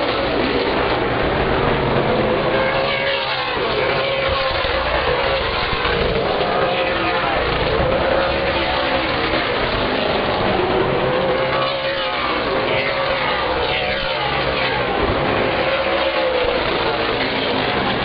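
Super late model stock cars' V8 engines running at racing speed around a short oval, several cars at once, their pitch rising and falling as they pass and as they accelerate off the corners.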